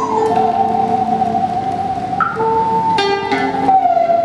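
Đàn bầu (Vietnamese monochord) playing a slow melody. Its single note slides and wavers in pitch as the flexible rod is bent. Other plucked string notes sound beneath it.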